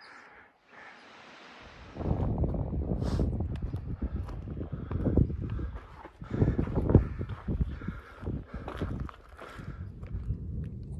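Irregular footsteps on a rocky, gravelly hiking trail over a low rumble that sets in about two seconds in; the opening two seconds hold only a faint hiss.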